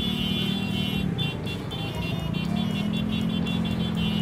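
Motorcycle engine running at low speed in slow traffic. Its hum drops about a second in and picks up again about a second and a half later.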